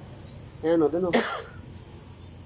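Crickets chirping steadily in a high, pulsing trill, about four pulses a second. A short breathy burst from a person cuts in just over a second in.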